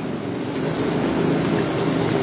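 Steady background noise with a low hum and no distinct events, such as room machinery or wind on the microphone would make.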